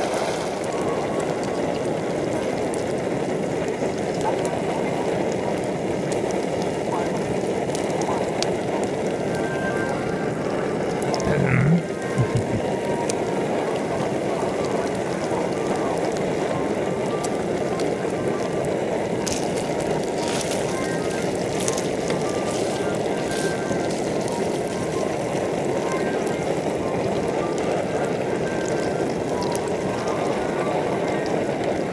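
A camping stove, likely a Primus Omnilite Ti, runs with a steady roar under a frying pan of meatballs, with light sizzling and crackling from the pan. There is a short louder sound about eleven seconds in.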